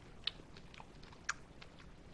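A person chewing a mouthful of fresh pineapple, heard as a run of small mouth clicks; the two sharpest come about a quarter second in and just after the middle.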